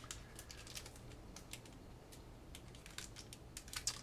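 A sealed foil trading-card booster pack and cards being handled: a quiet, irregular scatter of small crinkles and clicks, most of them close together near the end.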